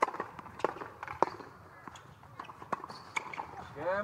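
Tennis ball struck by rackets in a short rally: a serve, then several sharp hits and bounces a half-second to a second and a half apart, the loudest in the first second and a half.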